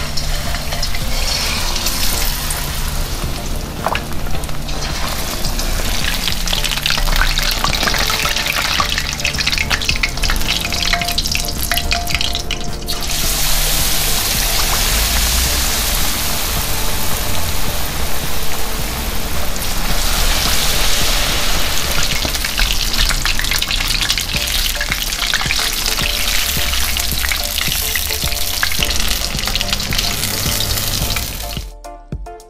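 Battered fish fillet frying in hot oil in a skillet, a continuous sizzle that grows much stronger about thirteen seconds in.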